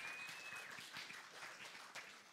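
Faint scattered applause from a congregation, with a thin high steady tone in the first half second or so.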